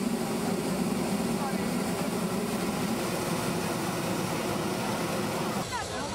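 Hot air balloon propane burner firing in one long blast, a steady loud roar that stops near the end.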